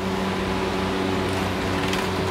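Steady mechanical hum with a constant hiss, unchanging throughout: machine background noise of the room.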